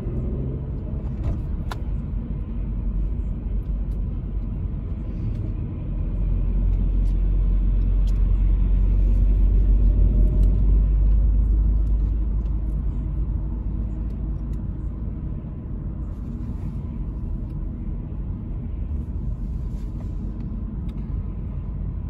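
Road and engine rumble inside a moving car's cabin, a steady low rumble that grows louder for several seconds in the middle before easing back.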